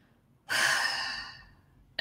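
A woman's sigh: one long breathy exhale starting about half a second in and fading away over about a second.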